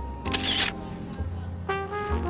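Background music with sustained brass notes. A short camera-shutter sound comes about half a second in.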